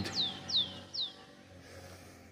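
A bird calling: three short whistled notes in quick succession in the first second, each falling in pitch.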